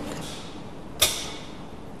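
A steel tommy bar knocking against the slotted nut of a hydraulic bolt-tensioning tool: one sharp clink about halfway through that rings briefly, over a low steady background hiss.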